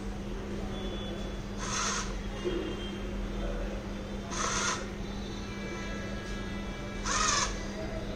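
A bird calling three times, short harsh calls about two and a half seconds apart, over a steady low hum.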